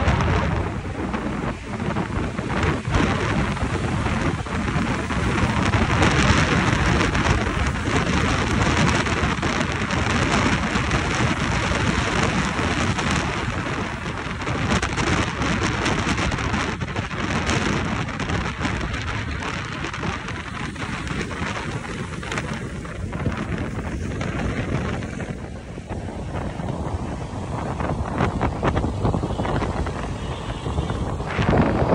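Wind rushing over a phone's microphone on a moving motorbike, a dense steady rush with road and traffic noise underneath that swells and eases with speed.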